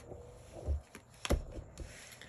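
A tarot card drawn and slid across a tabletop, then set down: a soft thump about two thirds of a second in, a sharp tap just after a second, and light rubbing of card on the surface.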